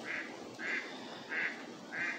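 Ducks quacking faintly: four short calls at an even pace, about one every two-thirds of a second.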